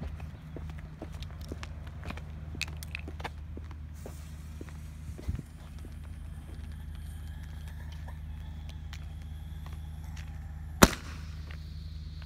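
Light steps and a steady low rumble, then one sharp bang about eleven seconds in: the lift charge of a Boom Box firework tube firing its mini plastic ball salute shell into the air.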